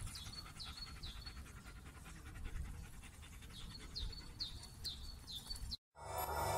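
Akita inu dog panting close to the microphone, with short high bird chirps repeating in the background, most in the first second and again in the last two seconds.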